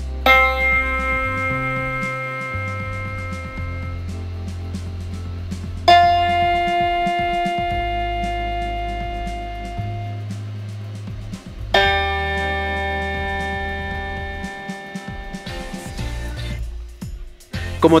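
Electronic keyboard playing three single sustained notes, one after another about six seconds apart, each fading slowly. The second note is an F near 349 Hz, which the tuner reads as slightly flat.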